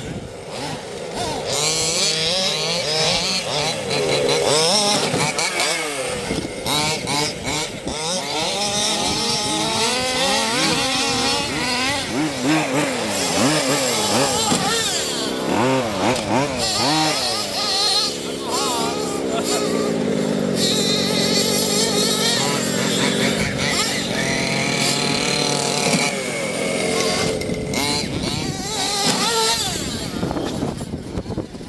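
Several radio-controlled cars driven hard at once, their motors revving up and down constantly, with several rising and falling pitches overlapping.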